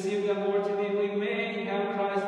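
Eastern-rite liturgical chant: a voice singing long held notes that step from one pitch to another.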